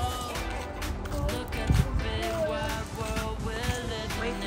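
Background music: a sustained melody over a light percussive beat.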